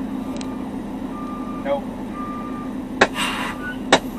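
Truck backup alarm beeping, about one half-second beep each second, over a steady idling diesel hum. About three seconds in there is a sudden sharp crack followed by a short hiss, and a second crack near the end.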